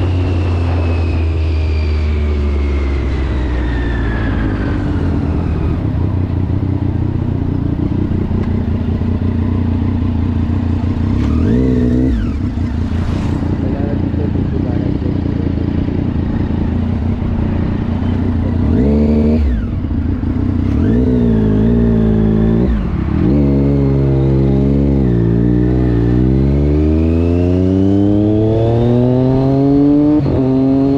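Sport motorcycle engine under acceleration while riding. The revs climb and drop sharply at several gear changes, then rise steadily through the last few seconds.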